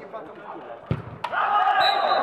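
A football struck hard from the penalty spot, a dull thud, followed about a third of a second later by a second sharp hit as the ball strikes. Right after, several voices break into loud shouting.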